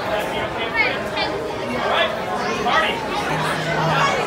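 Crowd chatter: many voices talking over one another in a large, busy hall.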